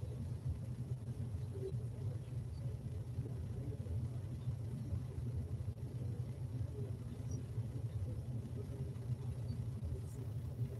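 Steady low rumble of room noise with no speech, unchanging throughout.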